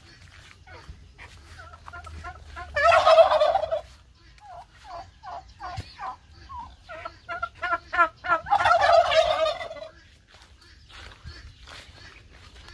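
Domestic turkey toms gobbling: two loud, rapid, rattling gobbles, about three seconds in and again near nine seconds. Between them comes a run of short repeated calls.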